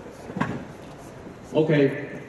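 A short knock about half a second in, then a man's voice calling out briefly near the end, loud and echoing in a large hall.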